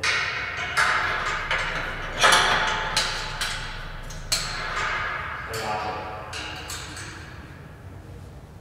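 Steel locking pin being fitted into the stainless-steel frame of a screw-feeder auger to hold it in its lowered position: a string of sharp metallic clinks and knocks, each ringing briefly, the loudest a little over two seconds in, growing fainter toward the end.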